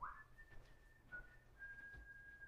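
Faint human whistling: a held note that slides up as it starts, a short lower note, then another long held note.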